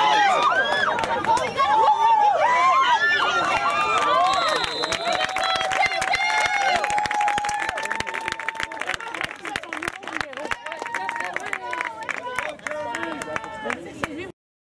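A sideline crowd shouting and cheering, many voices calling over one another, loudest in the first few seconds and easing off after that. Many sharp clicks or taps run through the second half.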